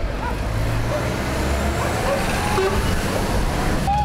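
Heavy diesel truck engine running steadily with a low hum.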